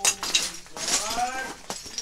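Chunks of ice clinking and crunching on an icy floor at the start, then a short wordless vocal exclamation that rises and falls in pitch in the middle.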